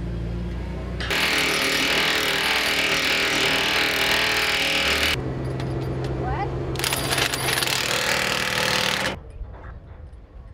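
A power tool driving a bolt on a steel waste container, running in two long loud bursts of about four and two seconds. Before that, a diesel engine hums low for about a second.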